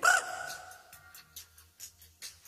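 A high sung note from an isolated male backing-vocal track, loud at the start and fading away within about a second. Faint, regular ticks follow, roughly two a second, left over from the drums in the separated vocal track.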